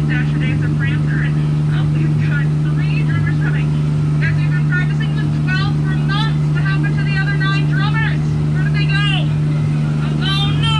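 Steady low hum of a Jungle Cruise tour boat's motor running at an even speed as the boat moves along the river.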